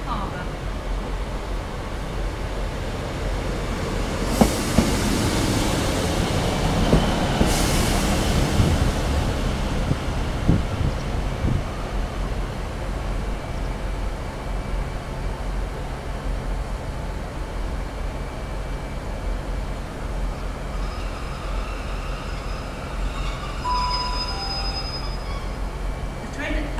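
British Rail Class 153 diesel multiple unit running into a station platform, its underfloor diesel engine droning steadily as it passes close by. A few sharp clicks from the wheels come between about four and eleven seconds in, with two brief high hisses at about four and a half and seven and a half seconds. A few thin high tones sound near the end as it draws to a stop.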